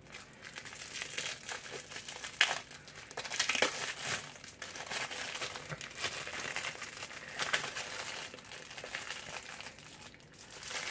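Thin clear plastic packaging crinkling and crackling as a pack of handmade nails is handled and opened, with a few sharper crackles two to four seconds in.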